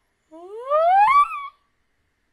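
A woman's excited squeal, rising steadily in pitch from low to high and lasting about a second.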